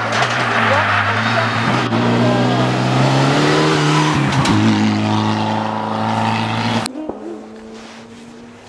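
Mitsubishi Lancer Evolution X rally car's turbocharged four-cylinder engine running hard as the car drives close past. The engine note breaks briefly about four and a half seconds in, then picks up again. The sound cuts off suddenly near the end.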